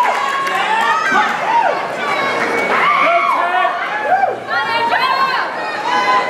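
Crowd of spectators cheering, whooping and shouting, many voices overlapping.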